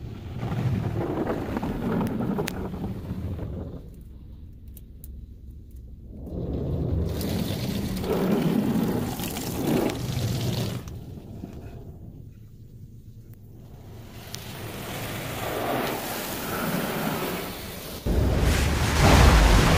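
Automatic car wash heard from inside the car's cabin: water spray and wash brushes rushing over the body and glass in three surges, with two quieter lulls between them.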